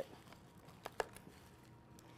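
Two light plastic clicks close together about a second in, from a small tub of crumbled blue cheese being handled and tapped over a glass salad bowl, with a few fainter ticks over quiet room tone.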